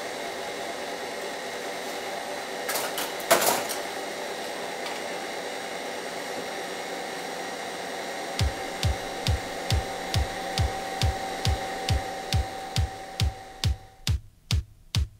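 Film projector running with a steady whirr and rattle, with a couple of clicks about three seconds in. About eight seconds in, an electronic kick drum beat comes in at a little over two beats a second.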